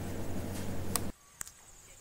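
Outdoor background noise with a low steady hum and a sharp click, cutting off abruptly just over a second in. A faint, steady, high-pitched insect buzz remains in the quiet that follows, with one more click.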